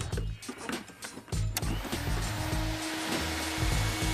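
A vacuum cleaner switched on about a second and a half in, running steadily with a constant hum, over background music with a steady bass beat.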